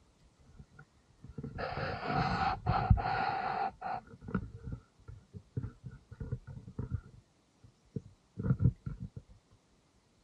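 Two long, loud breaths right at the microphone, about one and a half to four seconds in, with a short pause between them. Scattered low knocks follow, and a brief cluster of thumps comes near the end.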